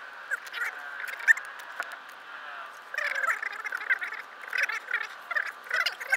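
Fast-forwarded sound of people talking while handling packing tape: high, squeaky chipmunk-like chatter with scattered clicks, the low end missing.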